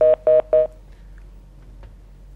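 Three quick electronic telephone beeps about a third of a second apart, each a two-note chord, as a call-in phone line is switched through; after them only a faint line hum.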